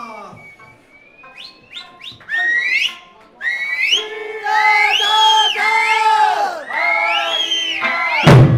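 Shrill whistles sliding upward, then a string of long, drawn-out shouted calls from Eisa dancers, each rising at the start and falling away at the end.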